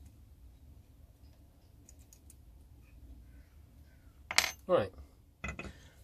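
Small metal clicks, then a sharp clink about four seconds in: a steel quick-change tool holder with its carbide tool is set down on a stone slab.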